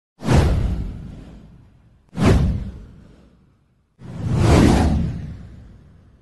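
Three whoosh sound effects about two seconds apart, each with a deep rumble underneath: the first two hit suddenly and fade away, the third swells up more slowly before fading.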